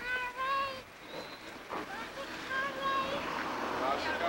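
Toddlers' high-pitched voices babbling and calling out in short wordless bursts, once at the start and again around the middle, over a steady hiss.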